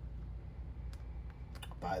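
A few faint, light clicks and ticks from trading cards and pack wrappers being handled, over a steady low hum.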